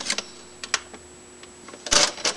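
Clear plastic parts bags and model-kit parts being handled in a cardboard box: a few sharp clicks, then a louder crinkle of plastic near the end.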